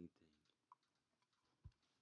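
Near silence: room tone, with a faint click and one soft, low thump about three-quarters of the way through.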